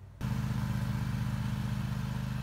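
An engine running steadily at idle, a low even hum with a fast regular pulse; it starts abruptly about a fifth of a second in.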